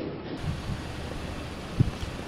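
Steady outdoor background noise, with a short low thump near the end.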